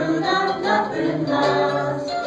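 A small group of men's, women's and a child's voices singing a song together, unaccompanied.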